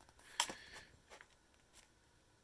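Faint handling of a paper booklet, opened out in the hand: one short sharp rustle about half a second in, then a couple of tiny clicks.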